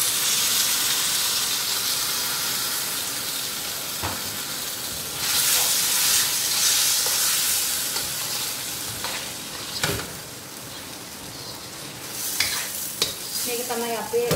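Pork and vegetables sizzling in a hot stainless-steel wok as a dark sauce is poured in and stirred with a wooden spatula. The sizzle flares loud at the start and again about five seconds in, then dies down, with a few knocks of the spatula against the pan.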